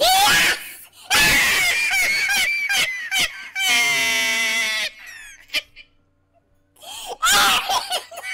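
A man laughing hard in loud, high-pitched shrieking bursts, with one long held squeal about four seconds in and a short lull before a last burst near the end.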